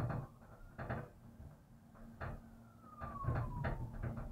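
Gondola cabin's grip and carriage rolling over the sheave wheels of a lift tower: a run of clunks and rattles, bunched together about three seconds in, with a thin squeal falling in pitch through the second half and a steady low hum underneath.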